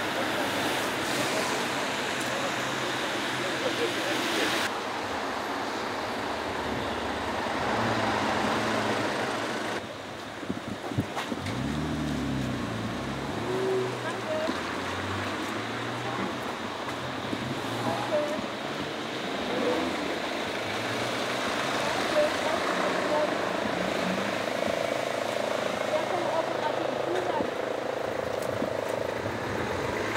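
Town street traffic: cars driving slowly past on wet asphalt, with people's voices mixed in. An engine note rises and falls about halfway through.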